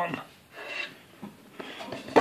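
A man's voice trails off, then faint rustling and rubbing as poplar boards are handled on a workbench.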